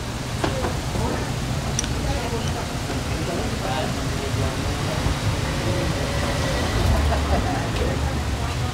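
Faint background voices over a steady low rumble, with a few light clicks of kitchen utensils at a street-food counter.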